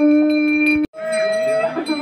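Bells ringing with a steady held tone. The sound cuts off abruptly a little under a second in, then the ringing resumes.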